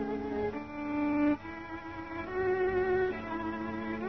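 Solo violin playing the vocal line of a song as a slow melody of held notes, over a steady lower note held in the accompaniment. It gets quieter about a third of the way in.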